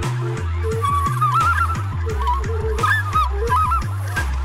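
Drum and bass with deep sub-bass and a steady drum beat, over which a small hand-held flute plays a live improvised melody full of quick turns and trills, moving higher about a second in.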